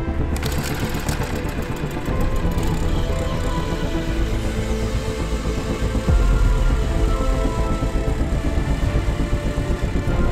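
Background music, with a Jiffy gas-powered ice auger's small engine running underneath as it drills through lake ice.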